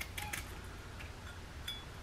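Faint, light clicks and a small clink from a kitchen knife cutting the top off a fresh strawberry, over a low steady hum.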